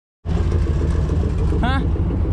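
Engine of a heavily modified off-road recovery truck idling with a steady low rumble. A short high call, rising then falling, cuts in near the end.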